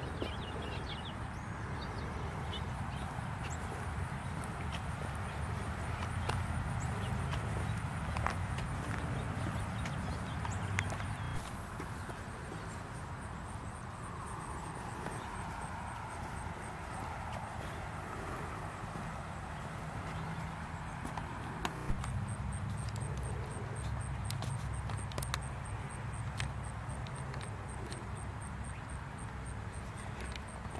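Footsteps through grass and knocks from a handheld camcorder being moved, over a low rumble that drops away for about ten seconds in the middle. A faint high pulsing sound runs throughout.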